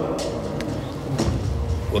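A low, steady rumble with a few faint knocks, and the tail of a man's voice at the very start.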